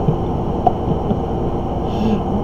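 Steady low background hum of a room, with a man chuckling quietly a few times.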